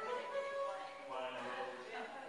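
Keyboard playing held chords, with the notes sustaining and overlapping.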